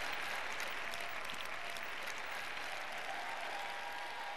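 Large audience applauding: steady clapping throughout.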